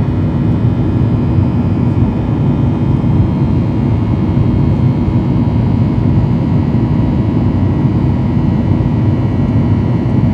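Cabin noise of a Boeing 737-800 in the climb, heard from a window seat beside its CFM56 turbofan engine: a loud, steady rumble with a few faint steady whining tones above it.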